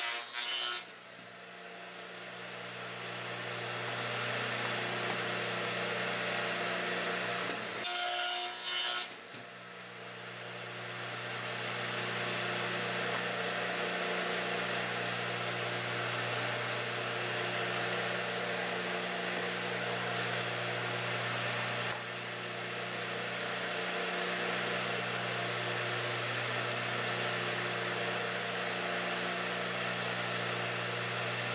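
Craftsman 12-inch radial arm saw with a dado blade running with a steady motor hum, with two short bursts of the blade cutting wood, one at the start and one about eight seconds in, as it mills shallow rabbets about a sixteenth deep into the ends of frame bars.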